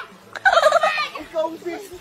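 A person's high-pitched cackling laughter, in quick rising and falling calls that die down in the second half.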